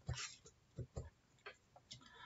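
Several faint, irregularly spaced clicks on a computer, such as a presenter clicking to advance slides.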